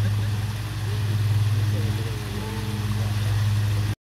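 Water splashing down a small rocky garden cascade, under a steady low hum that is louder than the water. Faint voices can be heard in the background.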